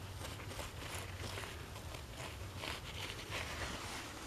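Gloved hands scraping and scooping loose, mica-rich soil, a quick run of soft, scratchy crunches that gets busier in the second half.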